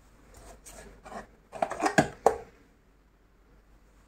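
Candles and small decorations being handled on a tabletop: light rustling and rubbing, then a quick cluster of clicks and knocks about two seconds in as they are set down on a small wooden stand. The last two knocks are the loudest.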